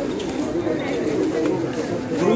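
Several men's voices talking and calling over one another, with no clear words, in a hall with a metal roof.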